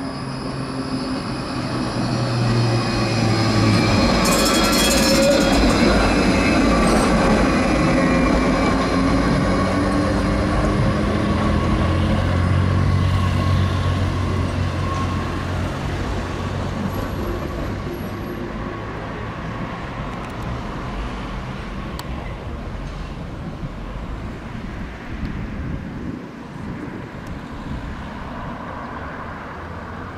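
Electric low-floor city tram running past on street track, with a steady whine from its drive over the rumble of wheels on rail. It swells over the first few seconds, stays loud for about ten seconds, then slowly fades away.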